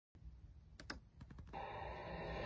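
A few faint, sharp clicks, two together and then a quick cluster, followed about three quarters of a second in by a steady, low background hiss.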